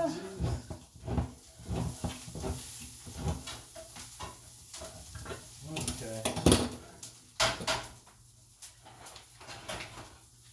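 Metal cooking utensil clinking and scraping in a frying pan of browning ground meat, in irregular knocks, loudest about six to seven seconds in.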